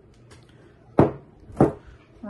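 Two sharp knocks of kitchenware about half a second apart, as a glass measuring cup and spoon are knocked against the bowl or table after pouring.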